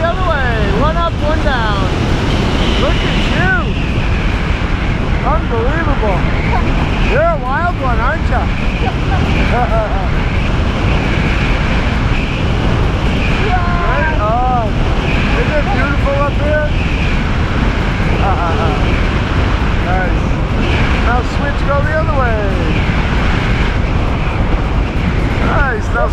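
Steady wind rushing over the camera's microphone during a descent under a tandem parachute canopy, with gliding voice-like pitches showing through it now and then.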